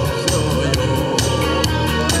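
A live band plays a trot song over a steady drum beat, with guitar, bass and keyboard.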